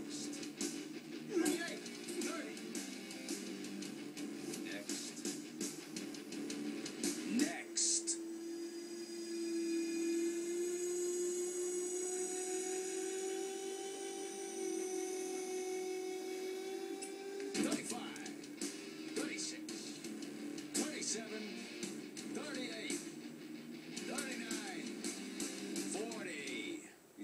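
Dramatic TV score playing through a television speaker: busy percussive hits in the first third, then a long held tone for about ten seconds in the middle, then the hits return near the end.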